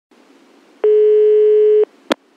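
Telephone ringback tone on the caller's line: one steady tone of about a second, over faint line hiss, while the phone at the other end rings before it is answered.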